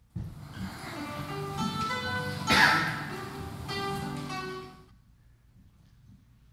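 A short stretch of recorded band music that starts abruptly, is loudest about halfway through, and cuts off about five seconds in.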